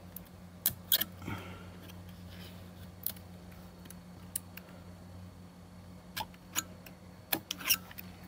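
Stanley knife scoring and cutting across a hive's viewing panel along a straight edge: light scraping and scattered sharp clicks as the blade works through. A faint low hum runs underneath.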